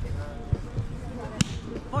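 A single sharp slap about one and a half seconds in, with a softer knock before it, over low outdoor background noise.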